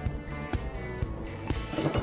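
Background music with a steady beat about twice a second, with a brief burst of noise near the end.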